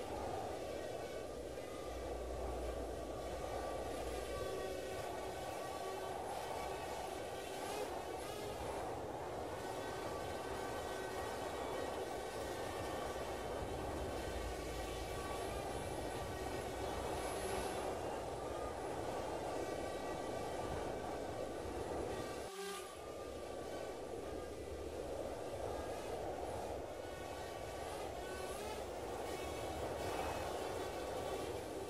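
A steady mechanical hum carrying a faint, slightly wavering high whine. It dips briefly about three-quarters of the way through.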